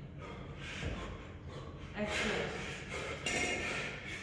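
A man breathing hard during double kettlebell long-cycle reps, with loud, forceful breaths in the second half and a dull thud about a second in.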